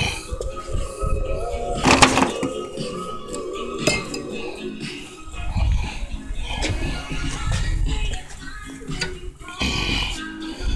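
Metal clinks and one sharp clank about two seconds in, from a metal charcoal cooker and foil pans being handled as slabs of ribs are lifted out, with music playing in the background.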